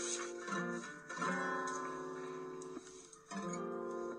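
Acoustic guitar playing a song's introduction: strummed chords left ringing, with new chords struck about half a second in, just after a second, and again near three and a half seconds.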